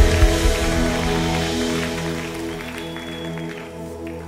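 Live band winding down a worship song: the drum beat stops just after the start and a held chord rings on, slowly getting quieter.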